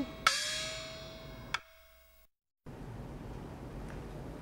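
A small Chinese opera gong is struck once. Its pitch slides upward, then it rings and fades. A sharp wood-block click comes about a second and a half in, and the percussion then cuts off suddenly, leaving faint room noise.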